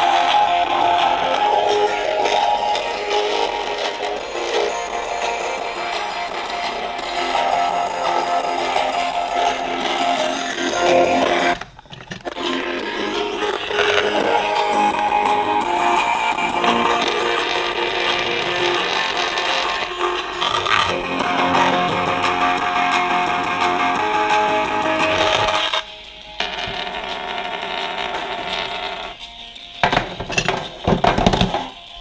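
Guitar-led music played through a tiny 8-ohm speaker driven by a small Bluetooth amplifier module, sounding thin with almost no bass. The sound drops out briefly about twelve seconds in and turns quieter near the end as the speaker is moved between makeshift enclosures.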